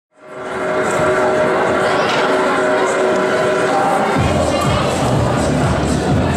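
Crowd noise and music. A steady low beat comes in about four seconds in.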